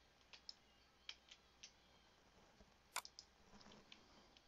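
Faint, scattered clicks of a computer mouse and keyboard as code is copied and pasted, with one sharper click about three seconds in.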